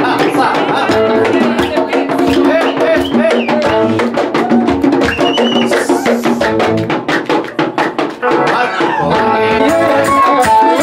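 Live Ethiopian traditional music: hand drums beating a fast, even rhythm under a melody line. About six seconds in the melody drops out, leaving the drums alone for about two seconds before it comes back.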